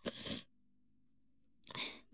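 A person's breathing: a short breath out, then about a second of dead silence, then a quick breath in, each a brief hiss.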